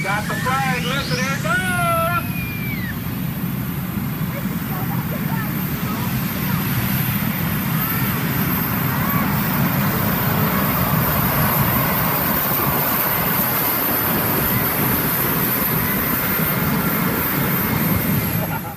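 Modified pulling tractor's engine running hard under full load as it drags a weight-transfer sled: a loud, steady engine noise. A high whine climbs steeply over the first two seconds and then holds.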